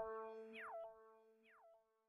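Tail of an electronic logo sting: a falling swoop repeats as a fading echo about every half second over a held low tone, dying away within about a second.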